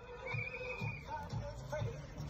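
Music with a steady beat at about two beats a second and a held high note in the first half.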